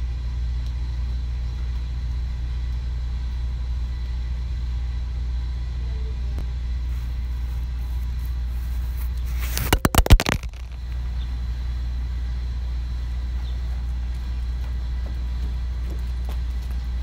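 Steady low rumble, with a quick cluster of loud knocks and rubbing right on a phone's microphone about ten seconds in: a dog's paw smacking the phone that is recording.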